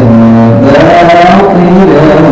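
A young man's voice chanting Quran recitation (tilawat) in long held melodic notes. The voice holds one pitch, then rises about half a second in and falls back. It is loud and amplified through a stage microphone.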